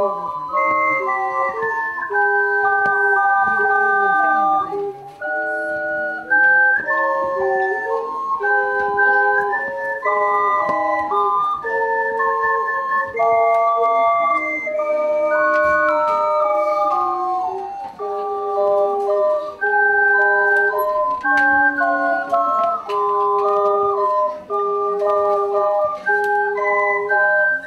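An ensemble of seven ocarinas playing a tune in several parts: pure, sustained notes sounding together in harmony and stepping from note to note.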